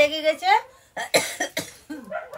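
A woman's voice briefly, then from about a second in a quick run of short coughs.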